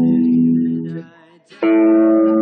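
Electric bass played along with a Yousician lesson's backing music. A held note over an E minor chord dies away about a second in, and a new note over an A chord is plucked about a second and a half in and held.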